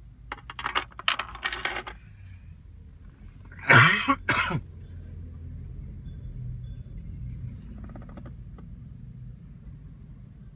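Car key and remote fob clicking and jangling as it is handled and pulled from the key-cloning device's antenna slot. A louder, short two-part sound follows about four seconds in, then a low steady hum.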